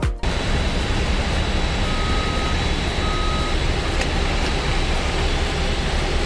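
Airport apron vehicle noise: a steady low engine rumble with a faint high whine, and two short electronic beeps about a second apart near the middle.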